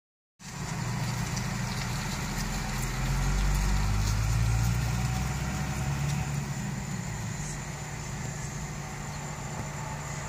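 Car engine idling steadily, heard from inside the cabin as a low hum that swells slightly a few seconds in.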